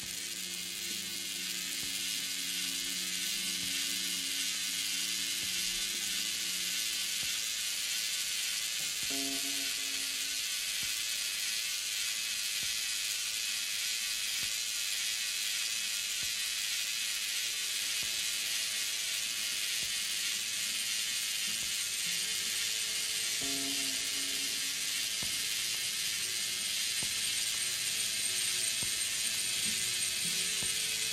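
Experimental turntable music: a dense, steady hiss of high noise from records worked through a mixer, slowly growing louder. Low held tones sound under it for the first several seconds, with short tone fragments about nine seconds in and again past the middle.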